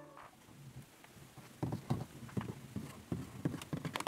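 Light plastic taps and clicks of a toy unicorn and carriage being set down and moved by hand on a tabletop. The run of faint taps, about four a second, starts about one and a half seconds in.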